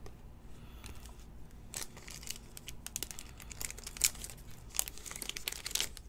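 Glossy trading cards being handled and slid off a stack, with a quick run of crisp crinkling and clicking that starts about two seconds in.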